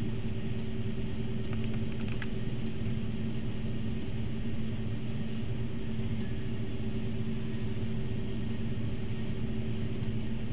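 Steady low electrical hum with a handful of scattered sharp clicks from the computer's keyboard and mouse, mostly in the first few seconds.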